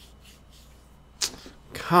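A man breathing out in dismay behind his hand: faint breaths, a short sharp huff of breath about a second in, then his voice starting near the end.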